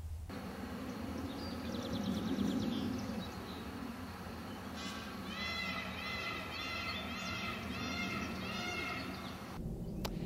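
Outdoor farm ambience with birds calling: a faint high trill early on, then a run of repeated, rising-and-falling calls from about five seconds in, over a low rumble.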